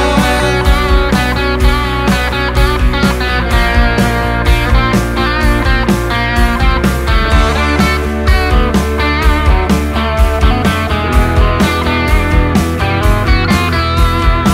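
Instrumental passage of a rock song with no singing: electric guitar playing over bass and a steady drum beat.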